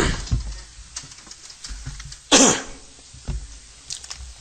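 A single loud cough about two and a half seconds in, with a few faint knocks and low room rumble around it.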